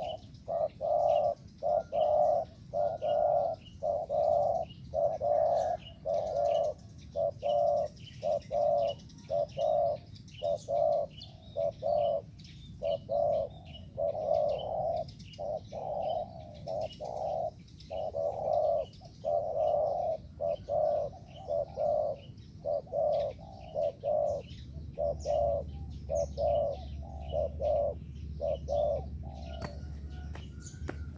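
Spotted dove cooing over and over, about two coos a second in long runs with brief pauses. Small birds chirp faintly behind it.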